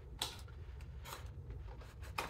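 Hands handling a cardboard box and lifting an item out of its compartment: a few light taps and rustles, the sharpest about a quarter second in, over a faint steady low hum.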